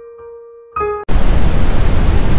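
Soft electric-piano music fading out with a brief chord, then cut off about halfway through by a loud, steady hiss of TV static, used as a transition effect.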